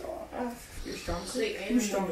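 Children's voices making short wordless vocal sounds, quieter than the talk around them.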